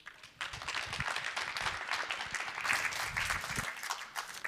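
Audience applauding, many hands clapping together, starting about half a second in and thinning near the end.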